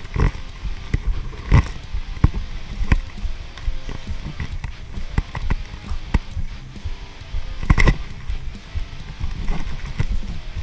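Footsteps and the knocks and rustles of a body-worn camera as the wearer moves, a run of irregular thumps and clicks with two louder knocks about one and a half seconds in and near eight seconds.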